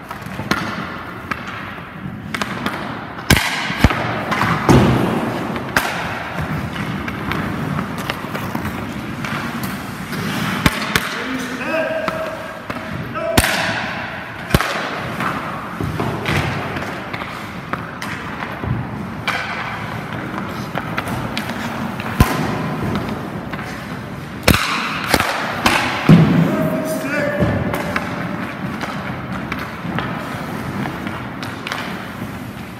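Hockey practice on an indoor ice rink: about a dozen sharp knocks and thuds at irregular intervals, pucks and goalie equipment striking each other and the boards, with indistinct voices in the background.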